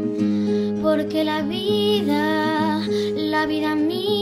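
Nylon-string classical guitar being played, with a high voice singing long, wavering notes over it.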